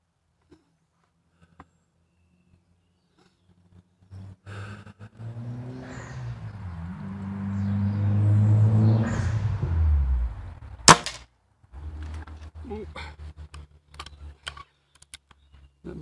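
A spring-piston break-barrel air rifle, likely a Walther LGV, fires once about eleven seconds in: a single sharp crack, the loudest sound here. Before the shot a low engine drone builds over several seconds and drops in pitch, like a passing engine. Small handling clicks follow the shot.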